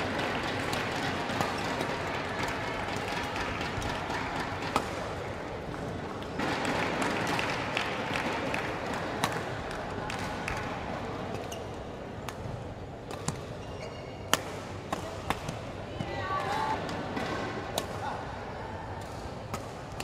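Badminton play in a sports hall: sharp, short racket strikes on the shuttlecock at irregular intervals, clustering more thickly in the second half, over a steady murmur of voices and hall noise.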